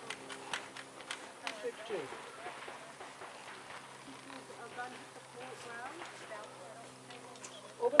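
Quiet background of faint distant voices and a low steady hum, with scattered light clicks and taps.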